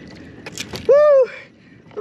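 A man's single short shout of excitement, a whoop that rises and falls, about a second in, just after a brief burst of noise.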